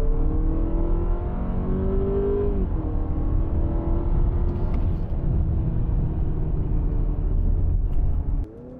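Honda Accord e:HEV's 2.0-litre four-cylinder hybrid powertrain heard from inside the cabin. The engine note rises under acceleration for about two and a half seconds, then drops as the accelerator is released, settling to a steady lower hum over road rumble. The car is slowing on regenerative braking held at its fixed strong setting.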